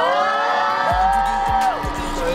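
Small crowd of fans cheering and screaming, with long held high screams that rise at the start and fall away near the end.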